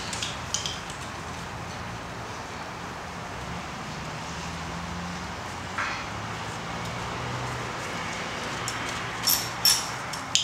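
Sparse metallic clicks and clinks of a socket wrench on a long extension being worked on an engine, over a steady low background hum; the two sharpest clinks come close together near the end.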